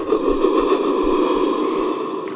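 A steady, noisy drone with no clear pitch or beat, strongest in the low-middle range.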